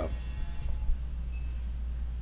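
A steady low hum with no distinct event in it.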